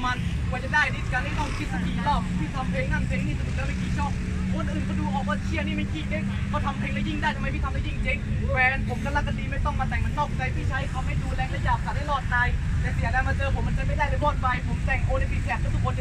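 A man rapping a battle verse in Thai without a break, with no backing beat apparent, over a steady low rumble.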